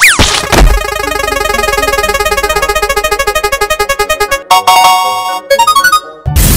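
Cartoon spinning-wheel sound effect on synthesizer: a quick downward swoop, then rapid repeating notes for about four seconds as the wheel spins, ending in a short run of notes as it stops on a prize.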